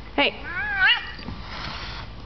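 A cat meowing: a drawn-out, wavering meow that dips and rises twice and ends about a second in, the complaint of a cat being pestered.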